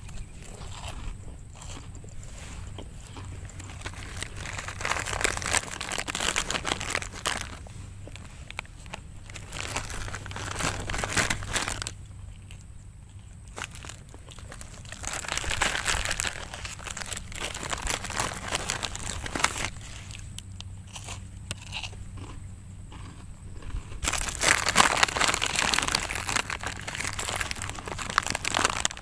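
Rustling and crackling handling noise on a phone microphone, coming in irregular spells with quieter gaps, loudest near the end, over a faint low hum.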